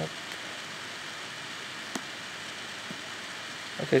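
Steady hiss of background noise, with one faint click about two seconds in.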